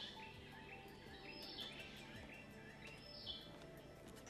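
Faint birdsong in mangrove forest: short high chirps falling in pitch, repeated many times.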